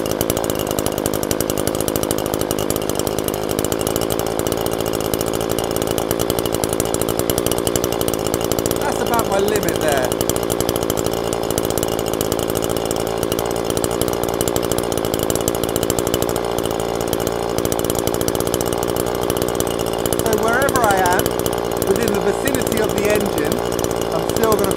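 A string trimmer's small two-stroke engine running steadily at a constant speed.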